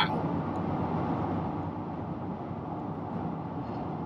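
Volkswagen Golf R (Mk7.5) 2.0-litre turbocharged four-cylinder idling, heard at its exhaust tips as a steady low running sound.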